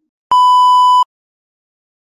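A single electronic beep: one steady tone lasting about three-quarters of a second, starting about a third of a second in and cutting off sharply, with silence around it.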